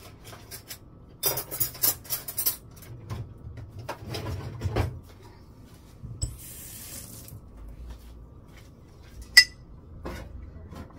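Cutlery and dishes clattering as they are handled, in two runs of quick strikes, then one sharp ringing clink near the end.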